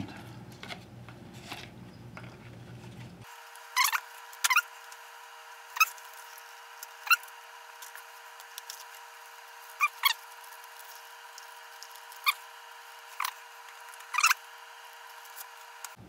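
Hands fiddling with a small cardboard model and its bent-wire crank, making scattered short clicks and squeaks, about nine over the last twelve seconds, over a faint steady hum.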